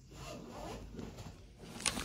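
Faint rustling and rubbing from the phone being handled and moved, with a brief sharp scrape near the end.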